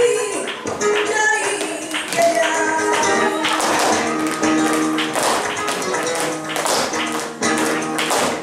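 Flamenco bulería music with guitar, and the sharp taps of dancers' shoe footwork on a stage floor, the taps thickest in the second half.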